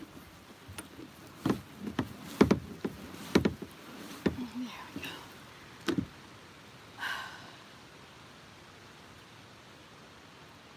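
Hollow knocks and bumps on a plastic kayak's hull, about a dozen over the first six seconds, as the paddler shifts her weight to climb out onto the bank. A brief vocal sound comes about seven seconds in.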